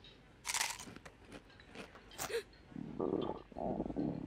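A few crunchy bites into a tortilla chip, then a short cartoon fart in two low buzzy parts in the second half, the loudest sound here: the 'cute toot' of a vampire who has just eaten garlic-laden guacamole.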